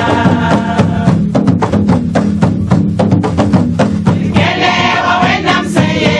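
Women's choir singing a gospel song to hand percussion. About a second in the voices fall back and a run of quick percussion strikes carries the rhythm, and the full choir comes back in about four and a half seconds in.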